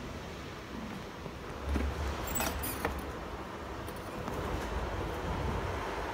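Rustling and scraping of a handheld phone being carried and handled, with a short run of sharp clicks a little over two seconds in, over a low rumble.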